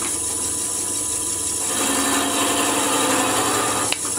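Wood lathe running at slow speed with a steady motor hum while a countersink bit in a tailstock Jacob's chuck is fed into the spinning wooden blank. A little under halfway through, a louder rough scraping of the bit cutting the wood joins the hum.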